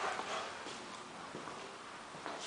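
Faint footsteps on a hard tile floor, a couple of soft knocks over quiet room noise.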